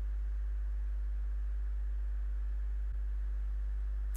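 Steady low electrical hum, a constant mains-type buzz on the audio feed with faint higher overtones, with a momentary dip about three seconds in.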